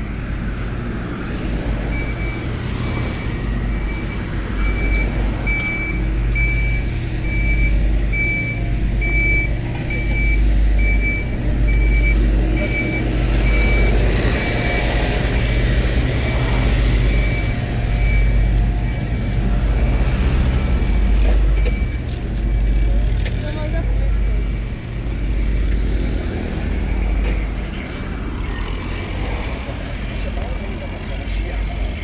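A reversing alarm on construction machinery beeps steadily for about twenty seconds, over a continuous low rumble of road traffic.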